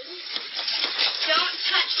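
Children's voices talking over each other, heard through a security camera's microphone.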